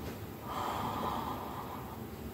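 A single heavy breath, a noisy rush of air lasting about a second that starts half a second in, from a person wearing a full-head silicone mask.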